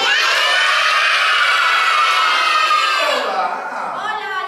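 A crowd of young children shouting and cheering all at once in high voices, dying down about three seconds in.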